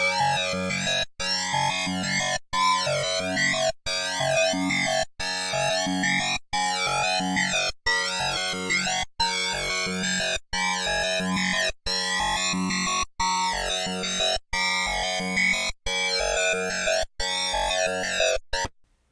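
Hi-tech psytrance loop playing back: a driven Serum synth with a comb filter, its texture sweeping and warbling over fast chopped low notes. The whole mix drops out briefly about once every 1.3 seconds.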